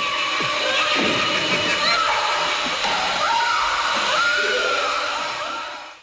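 Horror film soundtrack: a dense, chaotic mix of eerie music and screeching effects, with high tones that glide up and down. It fades out near the end.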